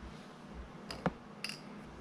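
Small fly-tying scissors snipping the tying thread at the fly's head, heard as a few sharp little clicks about a second in and just after.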